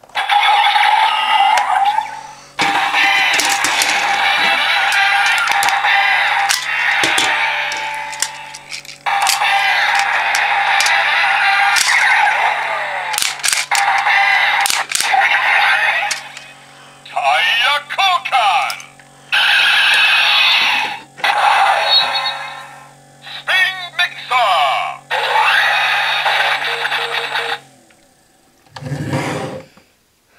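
DX Drive Driver toy belt playing its electronic sound effects: loud music-like tunes and a recorded voice calling out, over a low steady hum, in several stretches with short gaps and a few sharp clicks, stopping about 28 seconds in. The calls include the tire-change announcement for the Spin Mixer Shift Car, "Tire Koukan! Spin Mixer!".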